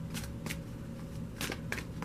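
A tarot card deck being shuffled and handled by hand, with a handful of short card snaps and slides.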